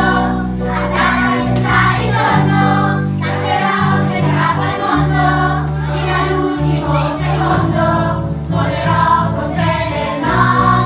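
A children's choir singing together, accompanied by a live band of guitars and keyboards, with long held bass notes underneath that change every second or so.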